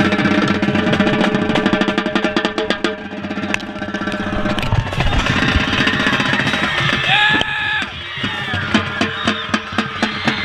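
Marching band drumline playing in the stands, rapid sticking on tenor drums (quads) right at the microphone together with the band's horns. The drumming thins out around the middle under crowd cheering, then picks up again near the end.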